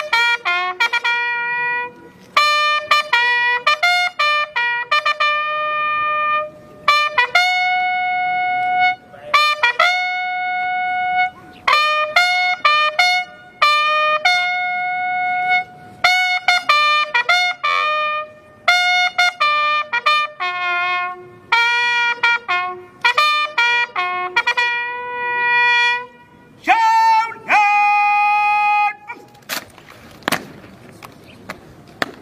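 A bugle call played solo: phrases of short, tongued notes and long held notes on the bugle's few natural pitches, sounded as a salute for the arrival of the commanding officer. The call stops just before the end, followed by one sharp stamp of boots.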